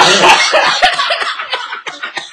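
A person coughing loudly, mixed with laughter.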